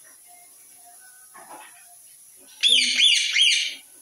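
A rose-ringed parakeet gives a burst of shrill, repeated calls, about four rising-and-falling notes in just over a second, starting about two and a half seconds in.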